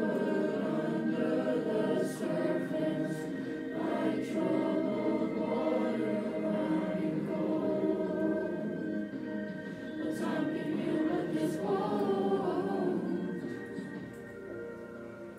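A boys' choir singing a song together, many voices blending throughout, with a short dip in loudness about ten seconds in.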